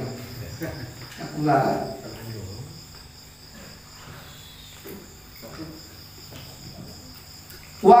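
Crickets chirping in a steady high trill, with a short phrase of a man's speech about a second and a half in.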